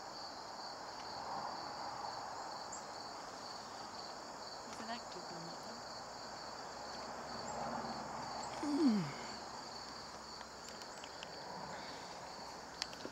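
Steady high-pitched chirring of insects in the background. Near the end comes a brief low sound that slides downward, the loudest moment.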